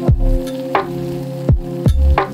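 Background electronic music: a held chord over deep bass that comes and goes in blocks, with repeated sweeps falling steeply in pitch.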